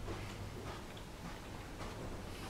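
Footsteps on a carpeted corridor floor, faint soft ticks about two a second, over a steady low hum.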